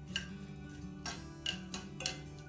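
Background music with a metal spoon clicking against a cast-iron skillet twice, about a second and a half apart, while stirring tempering spices in oil.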